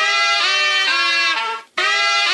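House music track with the kick drum dropped out: a pitched lead line plays a short phrase of held notes stepping up and down in pitch. It cuts off briefly near the end, then starts the phrase again.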